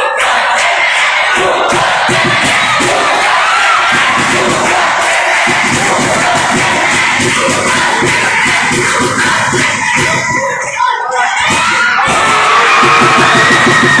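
Spectators at a futsal match shouting and cheering together, loud and continuous, swelling louder near the end.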